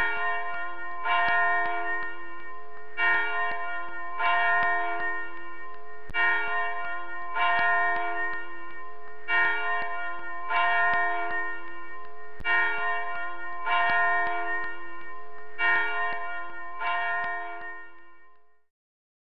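Church bells ringing: repeated strikes, roughly in pairs, each with a long ring that overlaps the next, fading out at the end.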